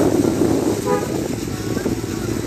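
Motorcycle running steadily while riding through floodwater on the road, with a constant rushing noise of engine and water. A short tonal toot about a second in.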